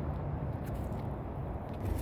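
Steady low outdoor rumble, with a few faint clicks about halfway through.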